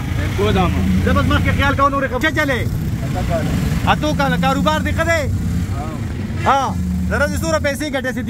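Auto-rickshaw engine running steadily as it drives through traffic, heard from inside the open passenger cabin under people's talking voices.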